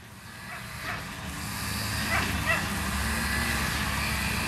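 A steady low hum that grows louder as the sound fades in, with a few faint short calls about half a second in and twice around two seconds in.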